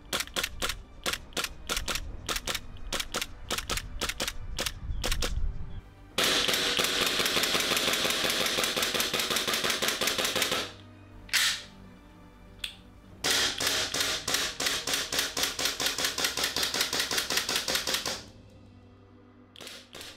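WE G17 gas blowback airsoft pistol firing, each shot a sharp crack with the slide snapping back: a steady string of single shots, then two long strings of fast shots, with a couple of lone shots between them.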